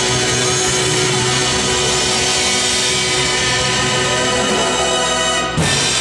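Live rock band playing: electric guitar, bass, keyboards and drum kit together. About five and a half seconds in, a sudden full-band hit cuts through, and the chord rings on after it.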